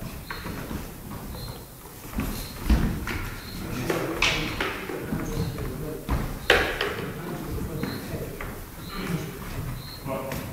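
Backsword sparring on a wooden hall floor: shuffling footsteps and a heavy stamp about three seconds in, with two sharp clashes of the swords about four and six and a half seconds in, the second the loudest. Short shoe squeaks on the floor recur throughout.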